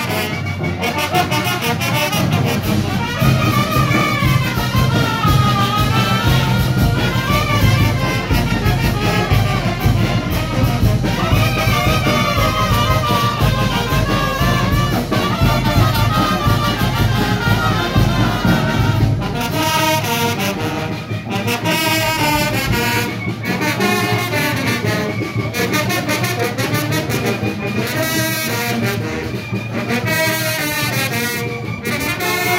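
Oaxacan village brass band (banda autóctona) playing a traditional son/jarabe dance tune, brass carrying the melody over a steady low bass. The deepest bass drops away about two-thirds of the way in.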